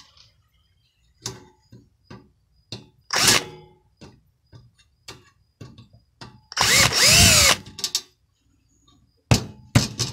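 Power drill backing out the screws that hold a fan motor to its frame: a short run about three seconds in and a longer run around seven seconds, each rising in pitch and falling away as the trigger is released. Clicks and knocks of metal being handled come between the runs, with a sharp knock near the end as the motor comes loose.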